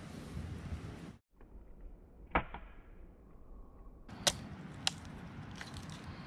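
A machete chopping at a green coconut: one sharp knock a little over two seconds in, then two sharp strikes about half a second apart and a few fainter taps near the end.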